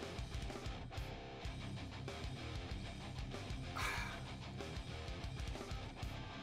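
Quiet background music with guitar, played at a low level.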